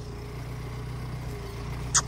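Pickup truck engine idling with a steady low hum, and a sharp click near the end.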